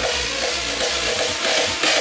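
Hardstyle dance music from a DJ set played over a sound system, with a heavy kick-drum beat. The bass thins out briefly in the second half, and a bright crash-like hit comes just before the end as the kicks come back harder.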